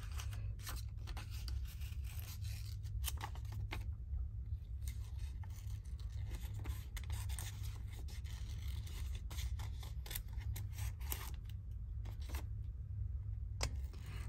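Small craft scissors snipping around the edge of a paper cut-out: short snips in irregular clusters, over a steady low hum.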